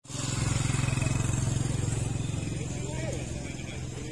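A motorcycle engine running close by, a low rapid pulsing that starts at once and grows gradually quieter, with people talking faintly in the background.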